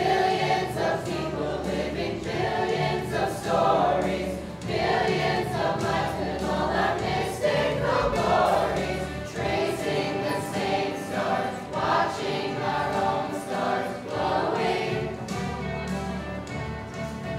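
A student choir singing together, many voices at once at a steady, full level.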